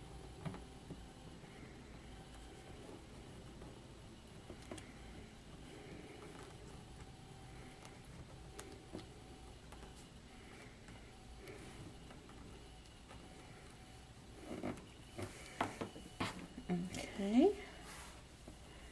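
Quiet room with faint murmuring voice-like sound, a few light taps and clicks of hands working a glue pen on paper over a cutting mat. Near the end comes a cluster of louder clicks and rustles of handling, with a short rising vocal sound.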